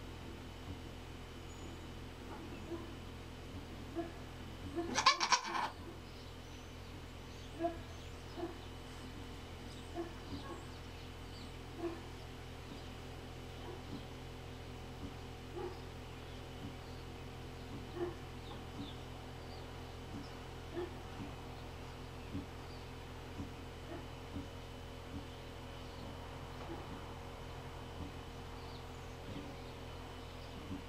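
Nigerian Dwarf doe in labor bleating once, a short loud cry about five seconds in. Around it are a steady low hum and faint short sounds about once a second.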